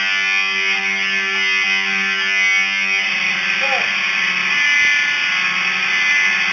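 Distorted electric guitar through an amplifier, holding sustained notes with a steady buzzing tone. The notes change about halfway through, followed by a short bend in pitch.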